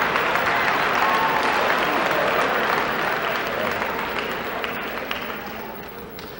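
An audience applauding, with scattered voices from the crowd. The applause dies away gradually toward the end.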